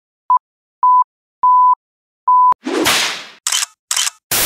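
Sound effects for an animated logo intro: four electronic beeps on one pitch, each longer than the one before, with a click at each edge. After the fourth comes a sharp click and a burst of noise that fades away, then two short bursts of hiss near the end.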